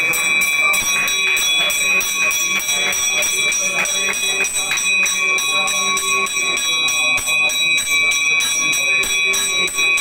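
Temple bells ringing in a fast, even rhythm, about four to five strokes a second, with their ringing tone held steady underneath.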